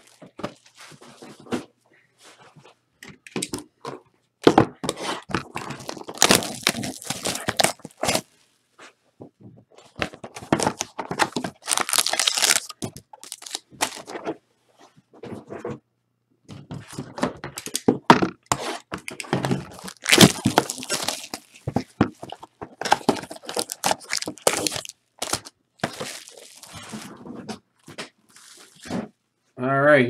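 Foil wrapping on sealed trading-card boxes crinkling and tearing as it is ripped open, in irregular rustling spells, with occasional thunks of the boxes being handled.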